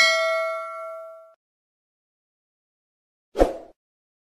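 Notification-bell sound effect from a subscribe animation: a bright ding of several ringing tones that dies away over about a second. Near the end, a short soft pop.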